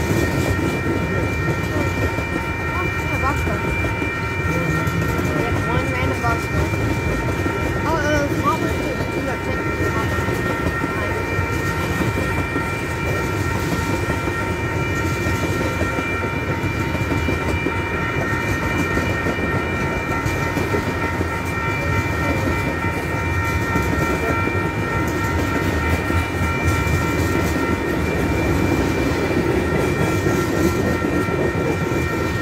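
A Norfolk Southern freight train's tank cars and covered hopper cars rolling past close by: a steady rumble and clatter of wheels on the rails, with a steady high-pitched ringing held over it.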